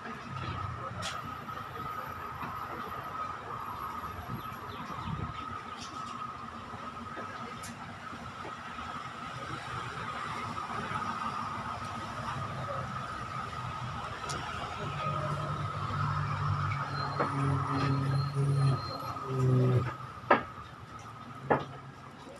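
Steady engine drone with a constant high whine, most likely from the train standing at the platform mixed with road traffic, growing louder in the second half; three sharp knocks near the end.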